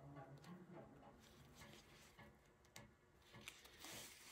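Near silence: faint rustling of nylon webbing being pulled through itself, with a few soft ticks.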